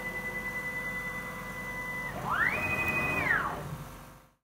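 Stepper-driven axes of a DIY CNC router making a high whine. A steady tone runs until about halfway, then a second move rises in pitch, holds and falls away within about a second, as the axis speeds up, travels and stops. The sound fades out at the very end.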